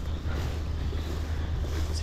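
Steady low wind rumble on the microphone, with faint rustling of the barley crop.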